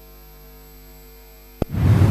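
Steady low electrical hum with a faint high whine, the bare signal of the recording once the music has stopped. There is a sharp click about one and a half seconds in, then a louder sound swells up just before the end.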